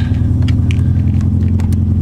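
Steady low hum of a car idling, heard inside the cabin, while its Air Lift air suspension raises the car, with a few faint clicks.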